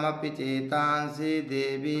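A voice chanting Sanskrit verses in a steady, sing-song recitation.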